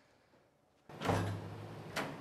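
Wooden door opening: a sudden swell of sound about a second in, then a sharp click near the end, over a low steady hum.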